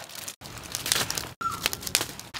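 Aluminium foil crinkling and rustling as a foil parcel of octopus is handled and wrapped, in short scratchy strokes broken by two abrupt cut-offs.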